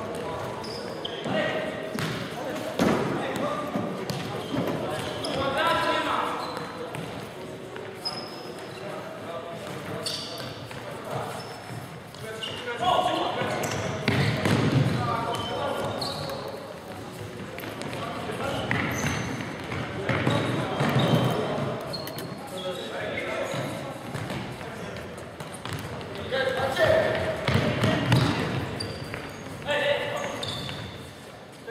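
Indoor futsal play in a large hall: players shouting to each other while the ball is kicked and thuds on the wooden floor, all with the hall's echo.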